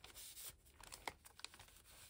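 Faint rustling of paper with a few light taps as paper sticker kits are slid into a paper pocket at the back of a planner.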